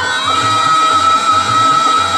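A woman's voice holding one long, steady high note in a sung verse of a Telugu stage drama, accompanied by harmonium and a steady low drum beat.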